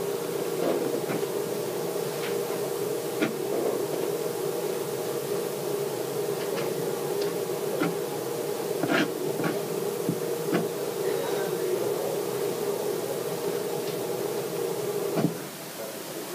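A steady mechanical hum with scattered light clicks and knocks. The hum cuts off suddenly near the end, right after a louder knock.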